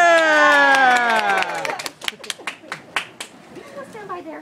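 A long drawn-out cheering "yeah" that falls in pitch, then, about two seconds in, a quick run of a dozen or so hand claps lasting about a second and a half before it goes quieter.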